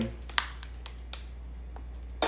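Metal spoon lightly clicking and scraping against a ceramic plate while scooping up chopped onion: a handful of small, sharp ticks, the loudest about half a second in.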